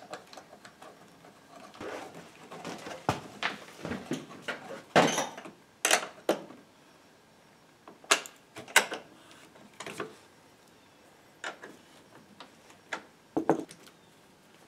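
A snowmobile battery and its cable terminals being fitted by hand: irregular clicks, knocks and rustles of plastic caps and metal parts, with a few louder handling noises about five and eight seconds in.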